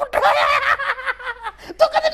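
People laughing and chuckling while talking.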